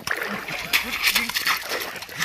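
A ball kicked twice, a short sharp knock at the start and another near the end, while men call out to each other during the game.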